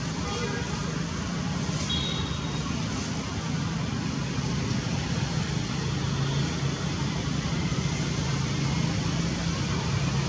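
Steady outdoor background noise with a low hum, and a brief high tone about two seconds in.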